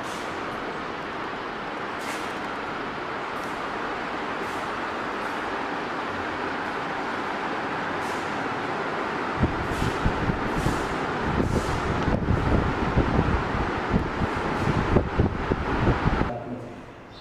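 A steady rushing noise, like running machinery or moving air, with irregular low bumps and thumps joining in from a little past halfway.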